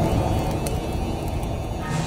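A low, noisy rumble under eerie music, a produced sound effect that fades gradually.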